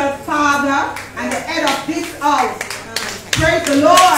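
Congregation clapping their hands, with voices going on over the claps. There is a low thump shortly before the end.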